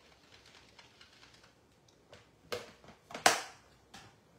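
A few short, sharp clicks and knocks from rubber-stamping supplies being handled and set down on a craft table, the loudest about three seconds in.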